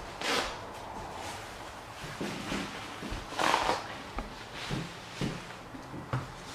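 A cloth being handled and wiped, rustling in two louder swishes, one just after the start and one about three and a half seconds in, with a few softer rustles and light knocks between them.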